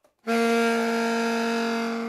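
Alto saxophone holding one long low note with a bright, breathy edge. It comes in sharply about a quarter second in after a short silence and fades slowly near the end.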